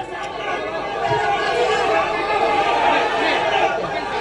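A crowd of people talking over one another: loud, steady chatter of many voices, growing a little louder after the first second.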